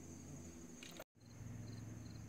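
Faint, steady chirring of crickets with a low hum beneath it; the sound cuts out for an instant about a second in.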